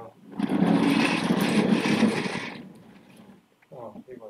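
Office chair on caster wheels rolled across a hard floor: a loud rattling rumble for about two and a half seconds that fades out.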